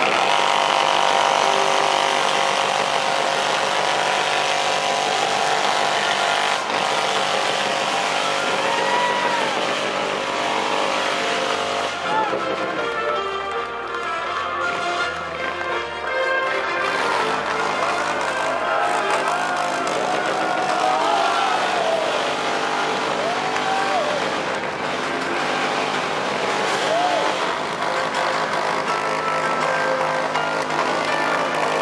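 Crowd applauding and cheering over music played through loudspeakers, a steady dense wash of clapping with voices rising and falling above it.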